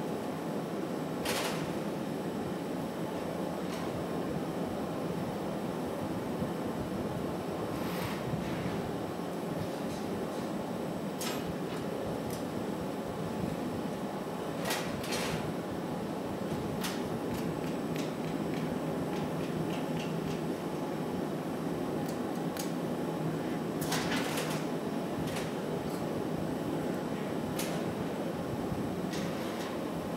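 Steady roar of hot-shop furnaces and ventilation. Scattered sharp clicks and taps of steel glassworking tools and the blowpipe against the glass and the bench.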